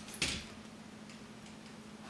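A short click and rustle of hands handling parts at the end of a camera slider rail, just after the start, then a faint steady hum.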